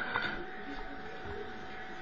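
Steady hiss with a faint, even hum tone, from a computer's speakers picked up by a phone's microphone.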